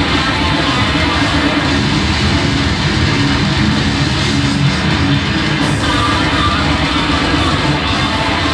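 Death metal band playing live at full volume: distorted electric guitars over fast, dense drumming, with no break in the playing.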